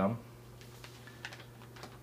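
Faint, scattered light clicks and rustles of vinyl LP records and their cardboard sleeves being handled on a lap, over a steady low hum.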